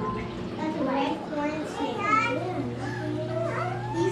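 Children's voices, indistinct talk and chatter, over a steady low hum that grows louder a little before halfway in.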